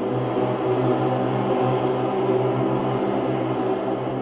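Bowed cello layered into a dense, sustained drone of many held tones.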